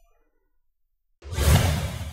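Near silence, then a little over a second in a loud whoosh sound effect with a deep rumble underneath starts suddenly and begins to fade: the sting that brings up the closing logo card.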